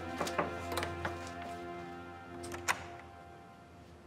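Paper crackling sharply as a stiff sealed letter is unfolded and handled, several crackles in the first second and a couple more near the end of the third second, over sustained background music.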